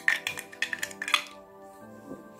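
Soft steady background music, with a few light plastic clicks and taps in the first second or so as the cap is handled and fitted onto a TDS & EC pen meter.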